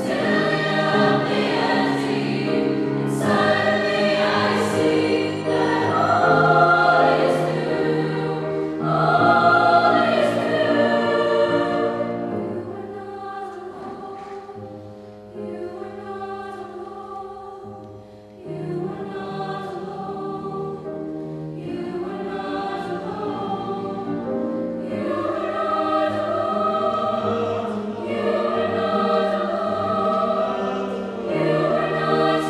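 High school choir singing with grand piano accompaniment. Loud for about twelve seconds, then quieter, fading lowest around eighteen seconds in before swelling again.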